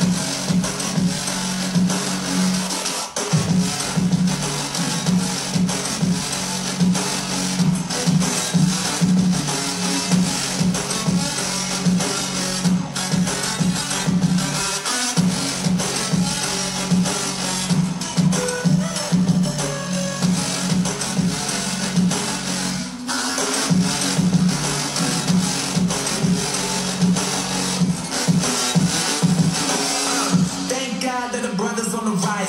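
Music with a heavy, pulsing bass beat played over Bluetooth through an Infinity (JBL) Sonic B100 soundbar. The beat drops out briefly a few times. The bass dominates the sound, which the reviewer calls completely distorted, with the bass overpowering everything and the treble just not there.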